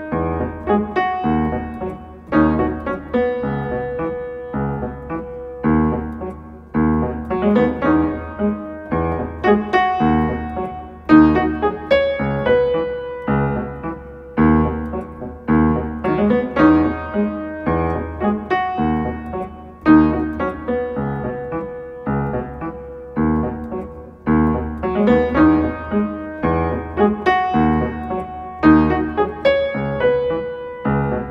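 Upright piano playing a simple melody over a repeating chord progression, with chords struck about once a second.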